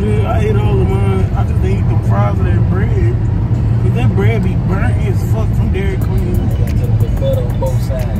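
A woman singing, with music playing, over the steady low road rumble of a moving car. Even, rhythmic ticks come in near the end.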